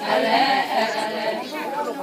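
A large group of voices singing together in a chorus of an Adi Ponung dance song, the many voices overlapping in one continuous phrase that dips briefly just past the middle.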